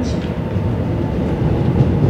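Korail metro train pulling into the platform behind glass platform screen doors, a steady low rumble.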